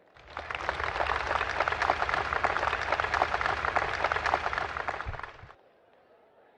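Large audience applauding, a dense clapping that starts abruptly and cuts off suddenly after about five seconds.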